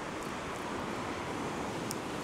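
Surf breaking and washing up a sandy beach: a steady rushing wash, with some wind.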